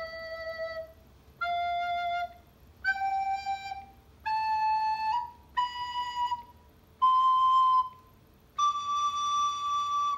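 Soprano recorder playing seven held notes one after another, stepping up a scale from low E through F, G, A, B and C to D. Each note lasts about a second with a short breath gap between, and the last is held longest.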